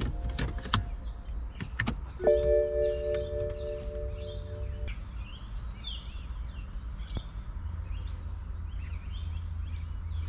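A few light clicks of hands working at the open dashboard. Then a steady electronic chime of several held tones lasts about two and a half seconds as the car's electrics and the new Android head unit are powered up. Birds chirp faintly in the background over a low hum.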